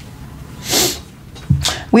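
A woman's short, sharp sniff through the nose, then her voice starting near the end.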